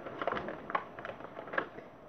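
Handling noise: a few light clicks and rustles as a small scented eraser is taken out of its packaging and handled.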